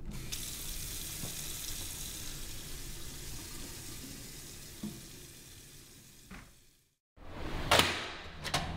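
Kitchen tap running into a stainless-steel sink: the water hiss starts just after the tap is turned on and fades away over about six seconds. After a moment of silence, a sudden loud noise comes near the end.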